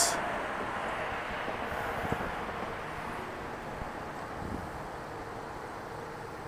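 Steady outdoor background noise of distant road traffic, with a faint held hum and no distinct events.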